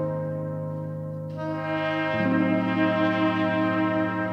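Music of slow, sustained brass chords, French horn among them. A brighter, higher note comes in about a second in, and the lower notes move to a new chord just after two seconds.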